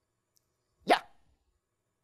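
A single short spoken "Yeah?" about a second in, otherwise near silence: only speech.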